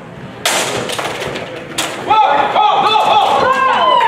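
A sudden loud clash as two longsword fencers meet, with a second of scuffling noise and a sharp knock just under two seconds in. Loud excited shouts from several people follow.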